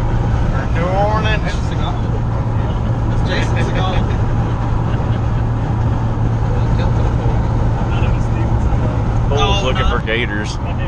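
Steady road and engine drone inside a pickup truck's cabin at highway speed. Brief voices break in about a second in, again around the middle, and near the end.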